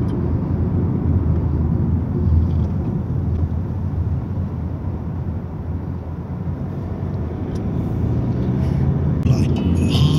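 Steady low rumble of a car's engine and tyres, heard from inside the cabin while driving. About nine seconds in, sharper, brighter sounds come in.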